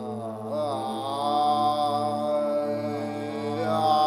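Background music: a chanting voice enters just after the start and holds long, slowly bending notes over a steady low drone.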